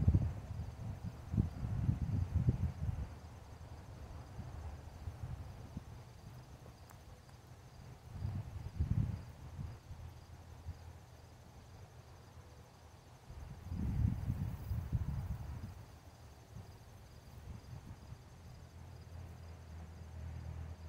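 Crickets chirping in a steady, high, pulsing trill, with low gusts of wind buffeting the microphone a few times: near the start, about eight seconds in, and again about fourteen seconds in.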